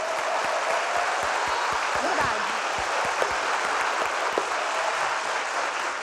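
Live studio audience applauding steadily.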